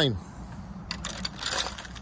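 Metal gate chain clinking and rattling, starting about a second in, with a thin high ring from the metal.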